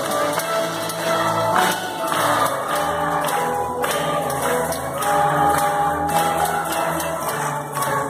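Live string orchestra playing a melody in held, stepwise notes, with a light percussion beat running through it.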